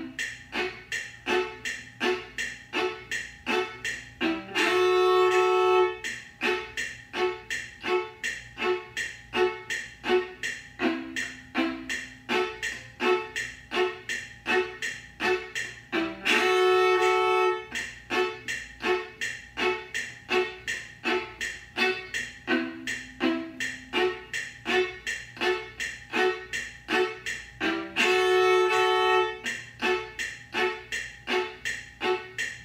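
Solo viola playing a backup accompaniment on the offbeat, short detached bowed strokes at about three a second. It is broken three times, about twelve seconds apart, by a long held note of about a second and a half.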